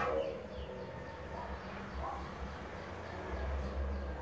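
A couple of short bird calls, about 1.5 and 2 seconds in, over a steady low hum.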